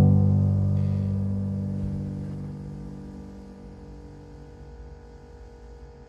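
Background music: a held low piano chord dying away slowly, fading to a soft level near the end.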